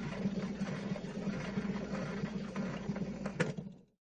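Steady surface noise and faint crackle from an old mono record after the song has ended, with a sharper click about three and a half seconds in. The noise then cuts off just before the end.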